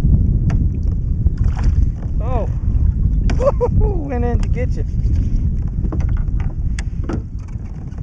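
Wind buffeting the action-camera microphone: a loud, uneven low rumble throughout. A few brief vocal sounds come a couple of seconds in, along with scattered sharp clicks from gear on the kayak.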